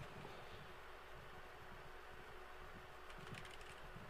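Faint computer keyboard keystrokes, a quick run of clicks near the end, as a password is typed at a login prompt. Otherwise very quiet, with a faint steady hum.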